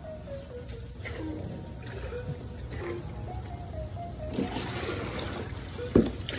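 Background music with a stepping melody throughout. About four seconds in, water begins pouring and splashing into a plastic tub, and a sharp knock comes at the very end.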